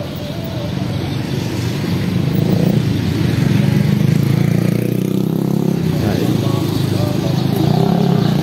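Street traffic: a motor vehicle's engine running close by, getting louder about two seconds in and staying loud, with faint voices underneath.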